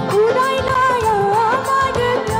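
A woman singing live through a microphone, holding long, wavering notes, over a band accompaniment with drums.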